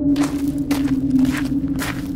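Footsteps, about two steps a second, over a steady low drone.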